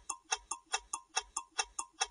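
Countdown-timer sound effect of clock ticking, fast and even at about five ticks a second, stopping near the end as the timer runs out.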